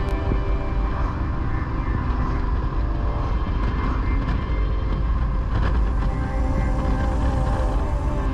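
Motorcycle riding steadily at road speed: engine running with wind rushing over the bike-mounted camera.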